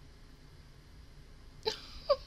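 Faint room tone, then near the end one short, high vocal burst from a woman: the first catch of a giggle.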